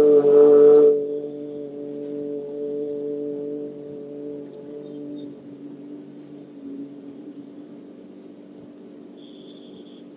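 A man chanting a long 'Om' on a steady pitch: a loud open vowel for about the first second, then a held hum that slowly fades over the next few seconds, as the opening of a Vedic peace mantra.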